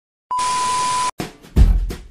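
TV-static glitch transition sound effect: a short burst of hiss with a steady high beep, under a second long, that cuts off suddenly. Background music with a heavy bass beat comes in about one and a half seconds in.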